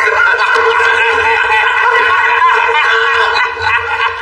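A group of men laughing at once, a continuous loud burst of overlapping laughter.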